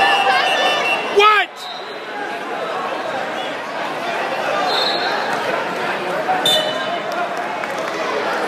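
Spectators shouting and chattering in a large gym during a wrestling match, with one loud, short yell about a second in.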